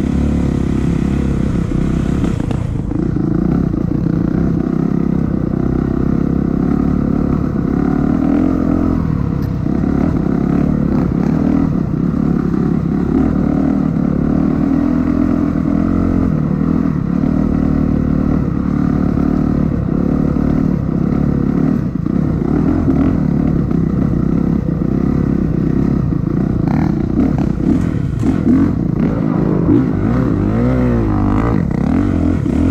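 Dirt bike engine running steadily under way on a rough trail, heard from the bike itself, with rattling and knocks from the bike jolting over the ground.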